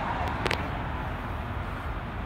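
Low, steady rumble of vehicles idling at a roadside, with one sharp click about half a second in.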